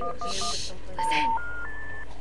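A touch-tone phone keypad beeps three quick times, with a short hiss over the beeps. Then three steady tones step upward one after another: a telephone network's special information tone, the signal that the call cannot be completed as dialled.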